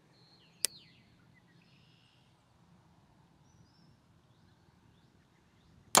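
A compound bow shot: one sharp snap of the string as the arrow is loosed, about half a second in, followed by a faint outdoor background.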